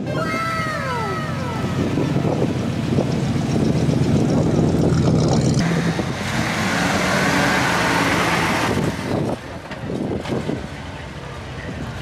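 A vehicle engine running close by with a steady low hum, growing louder and hissier about six to nine seconds in. At the start there is a drawn-out falling exclamation from a person.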